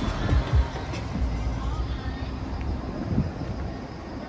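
Low rumbling and a few dull bumps from a handheld phone camera being carried out of a vehicle, the strongest in the first second and one about three seconds in. Faint music plays underneath.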